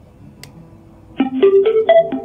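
A small click as the button of a retro-style Bluetooth radio speaker is pressed, then a little over a second in the speaker starts playing loudly: a quick melody of short, separate plucked-sounding notes, the tune it plays on switching on.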